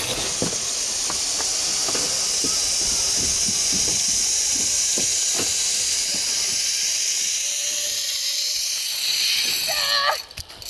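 Zip-line trolley running along a steel cable: a steady high hiss that grows louder near the end as the rider comes in, with a short knock as he lands on wood chips.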